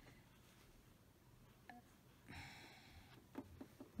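Near silence at a stopped sewing machine, with faint rustling of cotton fabric being handled a little past the middle and a few small clicks.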